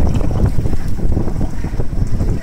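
Wind buffeting the microphone in loud, uneven gusts, over water splashing against an inflatable banana boat as a rider in the water climbs back onto it.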